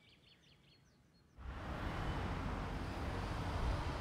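Faint high chirps of a small bird over near silence, then, about a second and a half in, an abrupt change to steady outdoor background noise with a low rumble that holds to the end.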